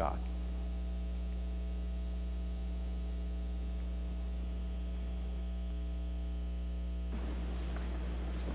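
Steady electrical mains hum carried on the sound system's audio feed, a low buzz with a ladder of higher overtones. About a second before the end, the upper overtones give way to a faint hiss while the low hum carries on.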